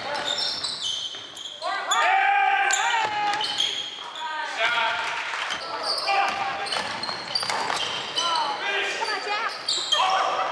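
Basketball game in a gym: rubber-soled sneakers squeaking sharply and often on the hardwood floor, a basketball bouncing, and players' shouts, all echoing in the hall.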